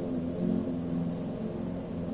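Soft background music: sustained low chords that change every half second or so.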